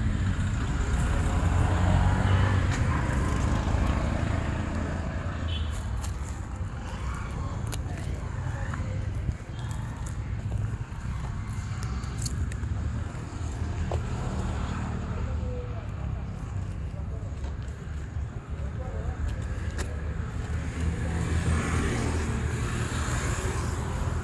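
Indistinct voices over a steady low rumble of outdoor background noise, with a few faint clicks.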